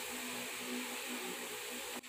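Steady background hiss with a faint low hum: room tone of the recording between spoken phrases.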